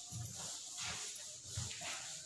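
Chalkboard duster rubbing across a blackboard while writing is erased, in about three strokes.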